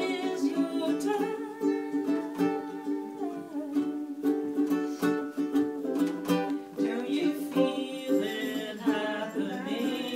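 A ukulele strummed steadily, accompanying a woman singing.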